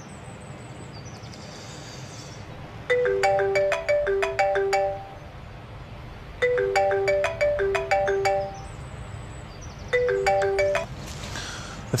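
Mobile phone ringtone playing a short melody three times, the third time stopping after about a second. It is an incoming call, which is then answered.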